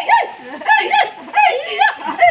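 A high-pitched human voice calling out a repeated syllable in quick rising-and-falling cries, about three a second.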